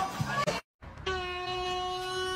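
Laughter cuts off suddenly about half a second in. After a brief silence, one steady held tone with overtones starts about a second in and holds at an even pitch.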